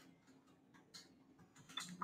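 Near silence with a few faint, scattered keystrokes on a computer keyboard, the clearest about a second in.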